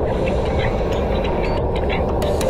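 Bicycle riding fast on a rain-soaked road: a steady rush of wind on the camera microphone mixed with tyre noise on wet tarmac, with a few faint ticks.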